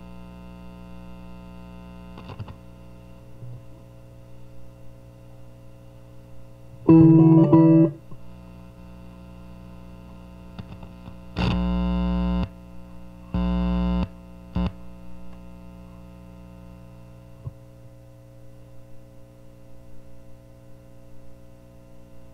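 Nine-string electric guitar played through a distorted amp: a quick loud burst of notes about seven seconds in, then two held chords and a short stab shortly after. Between the phrases a faint steady amp hum carries on.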